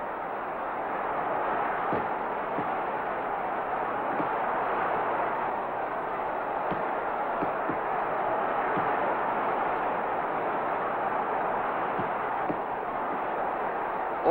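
Steady wash of arena crowd noise on an old fight film's soundtrack, with a few faint clicks.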